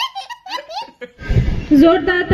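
A small child's hearty belly laugh, a quick run of short rising and falling bursts in the first second. After a brief pause, a thud and then a woman's voice come in near the end.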